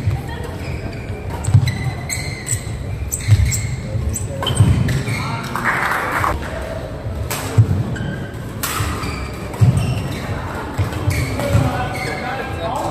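Badminton doubles rally in an indoor hall: sharp clicks of rackets hitting the shuttlecock, shoes squeaking and feet thumping on the court.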